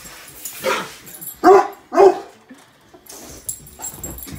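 Cane Corso barking in play at a balloon: three short, loud barks, the last two about half a second apart and the loudest.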